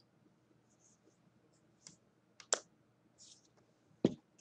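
A few faint, scattered clicks in near quiet, the sharpest about two and a half seconds in.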